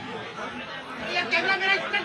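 Several people talking over one another in the background, a murmur of crowd chatter with no single clear voice.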